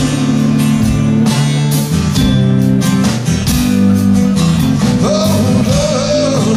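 Live band playing a slow blues ballad: three-string fretless bass guitar holding low notes under guitar chords, with steady drum and cymbal hits and a sliding melody line near the end.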